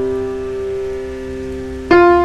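Soft instrumental background music: a held piano chord slowly fades, then a new chord is struck near the end.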